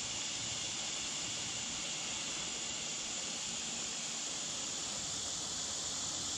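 Steady, high-pitched hiss-like chorus of insects such as crickets, unbroken and even in level; a lower part of the chorus drops out about five seconds in.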